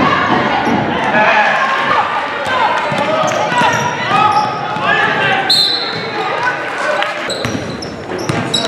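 Live basketball game sound in a gym: a basketball being dribbled on the hardwood floor, with voices calling out across the court and short high sneaker squeaks from about halfway through, all echoing in the hall.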